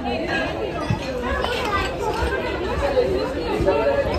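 Background chatter of several people talking, with no clear words.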